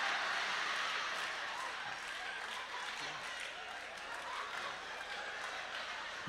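Live audience laughing with some clapping, a steady wash of crowd sound that eases off slightly toward the end.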